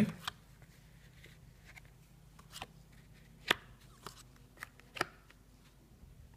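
Radiant Rider-Waite tarot cards being dealt and laid down on a woven rag-rug cloth: a scattering of soft taps and card flicks, the two loudest about three and a half and five seconds in.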